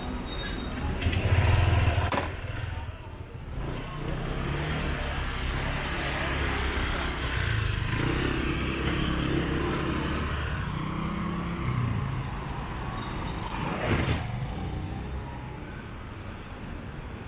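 City side-street traffic: car engines running and passing close by, loudest about a second or two in, over a steady background of traffic and passers-by's voices. A sharp knock comes near the end.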